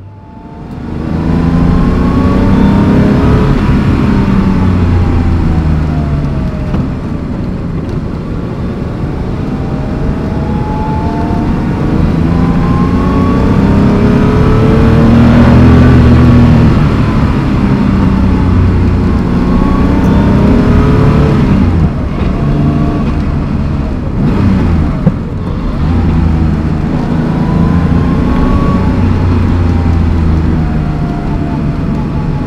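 Air-cooled, naturally aspirated 3.2-litre flat-six of a 1986 Porsche 911 Carrera 3.2 under way, its pitch rising and falling several times as it accelerates and eases off.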